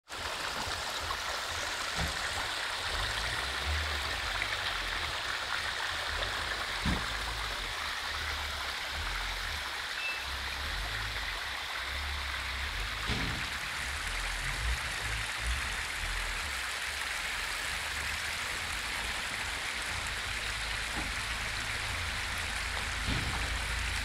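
Muddy floodwater rushing and splashing in a steady stream over a dirt road.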